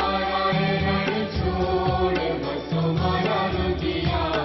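Hindu devotional aarti music: a chanted vocal line over stepped bass notes and a regular percussive beat.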